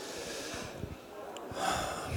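Breathing into a handheld microphone, with one louder breath about one and a half seconds in.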